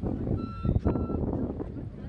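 A high, steady electronic beeping tone that sounds for under a second about half a second in, over a low rumble of wind and background noise.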